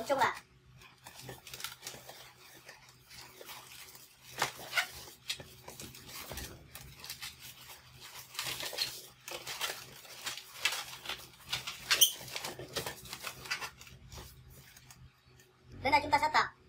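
Latex modeling balloons squeaking and rubbing against each other as they are twisted and wrapped together by hand, in irregular bursts, with one sharp squeak about twelve seconds in.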